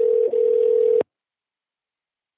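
Telephone ringback tone heard down a phone line as a call rings out: one steady ring of about two seconds, with a tiny break early on, cutting off suddenly about a second in.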